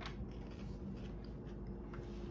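Quiet eating sounds: a few light clicks of a metal fork against a plate, and chewing, over a steady low room hum.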